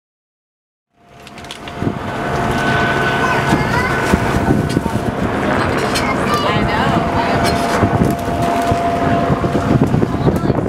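After a second of silence, the sound of an open-air tour bus on the move fades in: wind on the microphone, road and engine noise, and indistinct passenger voices. A steady thin whine runs through most of it.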